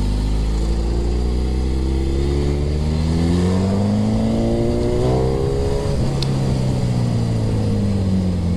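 Suzuki Hayabusa's inline-four engine accelerating hard, its pitch climbing steadily for about five seconds, then dropping at an upshift about six seconds in and running on at lower revs.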